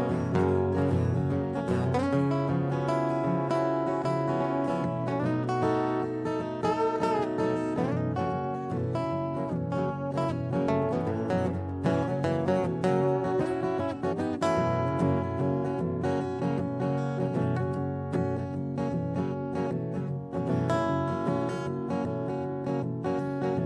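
Live acoustic guitar music in an instrumental break: a strummed rhythm with a low bass line under a lead line with a few bent notes about six seconds in.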